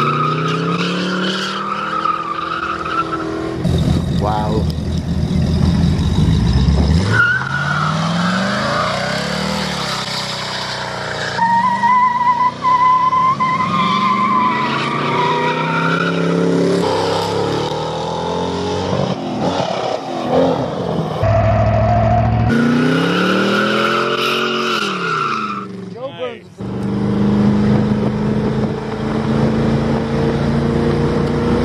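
Chevrolet Corvette's V8 revving hard with its rear tyres squealing through a burnout launch, then cars accelerating along the road. The sound comes in several short clips that change abruptly every few seconds.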